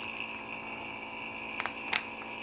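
Vacuum packer's pump running steadily, drawing the air out of a seven mil Mylar food bag through a vacuum-packing needle to pull it down to a tight vacuum. Two short crinkles of the foil bag in the hands near the end.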